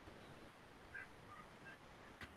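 Near silence: room tone, with a few faint short high chirps a little after a second in.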